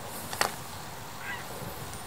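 A trials bicycle held still on its brakes: one sharp click about half a second in, then a faint short squeak near the middle.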